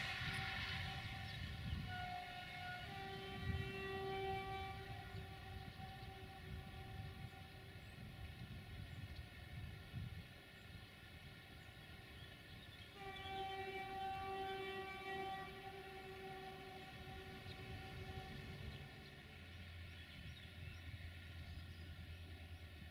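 Distant diesel locomotive horn sounding two long blasts, each about five seconds, the first starting about two seconds in and the second about thirteen seconds in. A low steady hum comes in near the end.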